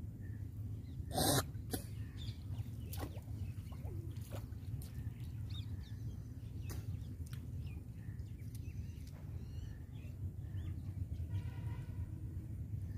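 Outdoor pond-side ambience: a steady low rumble with faint scattered bird chirps, and one short loud noisy burst about a second in.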